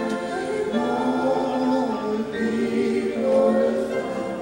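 A group of voices singing together in held, overlapping notes: a congregation singing during a prayer time.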